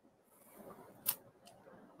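Quiet room tone with a few faint soft sounds, then one short sharp click about halfway through.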